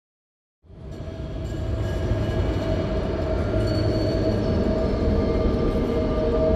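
Ambient drone for an opening title, fading in about half a second in: a steady low rumble with a few held tones over it, swelling over the next second or two and then holding level.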